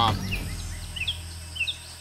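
A bird giving short, high chirps several times, often in pairs, over quiet rainforest ambience, while a low background music drone fades out.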